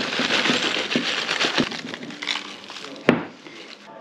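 Brown paper bag crinkling as lumps of pine resin are poured from it into a glass jar, the pieces clicking against the glass. A single sharp knock about three seconds in, then it goes quieter.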